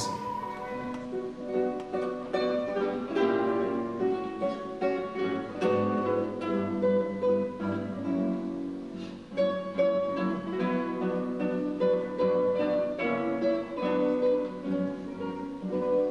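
Four classical guitars playing together: a plucked ensemble passage of melody over chords.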